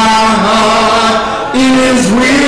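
A man singing a slow gospel song with long held notes. About one and a half seconds in, the note breaks briefly and goes up to a higher held note.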